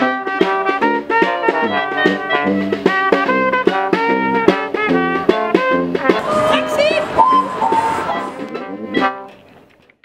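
Street brass band of clarinet, trombone and tuba playing a lively tune in quick short notes, fading out near the end.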